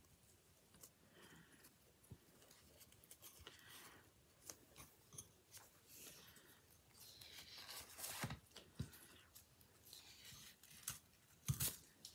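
Faint handling sounds of ribbon being looped and pressed onto a bow maker: soft rustling and sliding of the ribbon with scattered light clicks and taps, and a louder swish of ribbon around seven to eight seconds in.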